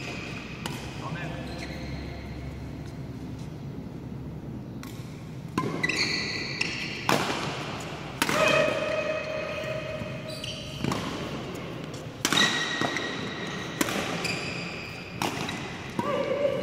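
Doubles badminton rally: from about five seconds in, sharp racket strikes on the shuttlecock come roughly once a second. Between them are drawn-out squeaks of court shoes on the floor mat.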